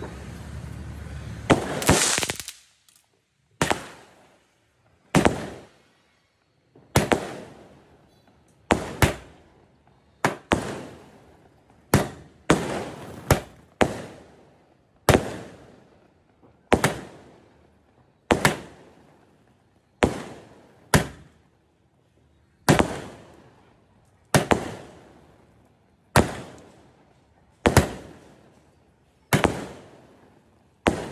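A 30-shot multi-colour aerial shot cake firing: a rushing hiss at the start, then a steady run of sharp bangs about every one to two seconds, each trailing off quickly.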